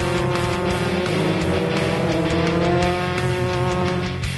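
Formula 3 single-seater's engine running at speed, its pitch rising slowly as the car accelerates along the track, mixed over rock music with a steady beat.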